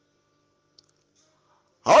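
Near silence in a pause between sentences, with one faint brief tick a little under a second in. A man's voice starts speaking near the end.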